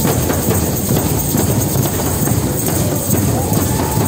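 A drum circle of many djembe-style hand drums played together in a dense, steady rhythm, with tambourines jingling among them.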